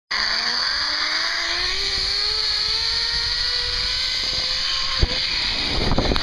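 Hammock zip line trolley running down its cable, a whine that climbs steadily in pitch as the ride speeds up. About five seconds in there is a knock, the whine fades, and rushing water noise comes in as the rider drops into the water.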